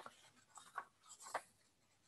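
Faint rustling and scraping of paper sheets being slid across a desk, in a few short strokes.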